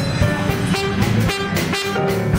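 Live jazz combo playing: trumpet and trombone hold sustained notes together over a drum kit and electric keyboard.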